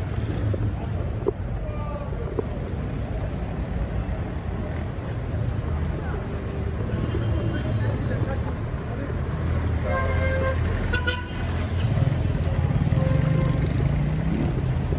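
Road traffic: a steady low rumble of vehicle engines, with a few short horn toots.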